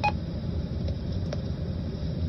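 A short electronic beep from the mobile ham radio right at the start, as one transmission ends, then steady low road rumble inside a moving car.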